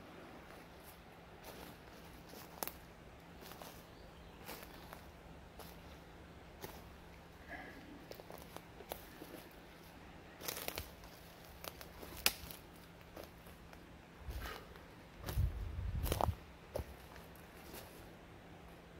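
Footsteps over the forest floor off-trail, dry twigs and leaf litter crunching and snapping at irregular intervals, with a louder run of crunching and brushing through undergrowth near the end.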